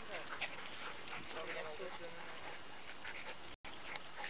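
Small dogs, West Highland white terriers, making short pitched vocal sounds as they play, over people's voices in the background. The sound cuts out for an instant near the end.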